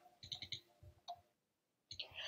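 Faint light clicks from a silicone soap mould and its rubber fixing band being handled: a few in the first half second and one more just after a second in.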